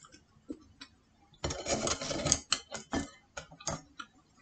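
Crisp pizza being torn apart by hand on a plate: sharp clicks and a crackling stretch about a second and a half in, then a few separate clicks.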